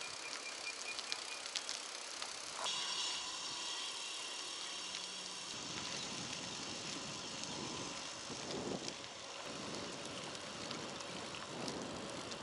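Touring bicycle ridden along a path: a fairly quiet, steady hiss of tyres rolling and moving air.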